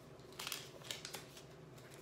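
Pages of a small paper booklet being flipped by hand: a few quick, crisp papery flicks in the first half.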